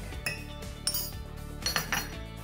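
A metal measuring spoon clinking and tapping against a stainless steel mixing bowl and a small ceramic dish: about three light clinks, over soft background music.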